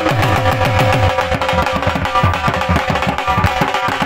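Dhol music for jhumar: a fast run of dhol strokes, several a second, the deep bass-head strokes falling in pitch, over a steady held melody.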